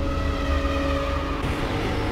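Cinematic outro sound effect: a deep, steady rumble with several held droning tones above it.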